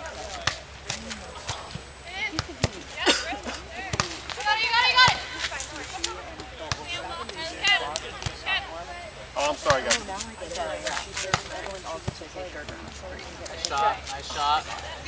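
Beach volleyball rally: sharp slaps of hands striking the ball several times, with players' voices calling out in between, loudest about five seconds in.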